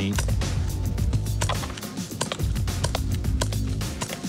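CO2-powered Colt Peacemaker replica air revolver fired shot after shot, a string of sharp cracks in quick succession with the single-action hammer thumbed back between shots. Background music runs underneath.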